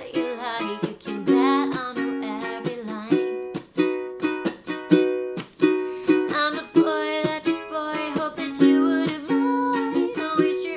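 Baton Rouge tenor ukulele strummed in a steady rhythm, its chords ringing, with a woman singing over it at the start and again about six seconds in.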